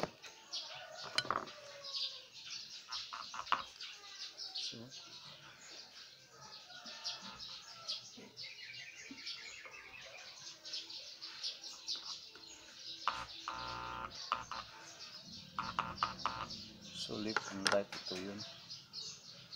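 Small birds chirping and tweeting over and over, with a short run of fast repeated notes about halfway through.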